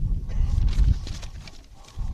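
Low rumble with soft, irregular thumps picked up by an outdoor microphone, fading toward the end.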